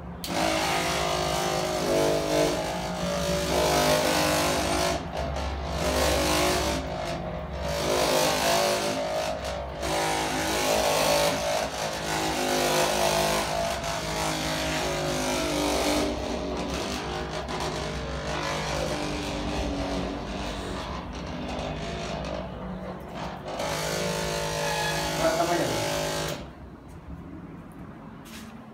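Handheld electric body massager running while pressed against a patient's back: a continuous motor hum whose pitch and strength shift as it is moved and pressed. It drops away near the end.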